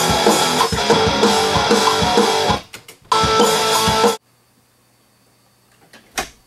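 Rock band music: guitar and drum kit playing, breaking off about two and a half seconds in. A short second burst follows, cut off abruptly just after four seconds, leaving a faint low hum.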